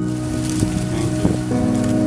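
A rustling hiss laid over soft background music, with two light knocks in the middle.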